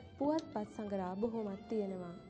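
A young girl's voice, speaking in pitched, gliding phrases.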